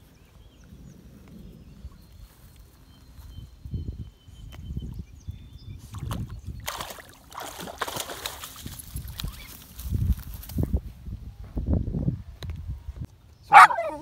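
Small dog splashing as it wades through shallow water at a lake edge, with the most vigorous splashing for about four seconds in the middle.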